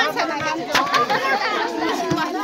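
Several women chattering over one another, with a few sharp hand claps.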